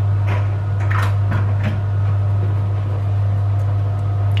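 A steady low electrical hum from the soup maker, which is still switched on, with a few light clinks and knocks of a spoon and crockery while hot tomato soup is dished up for tasting.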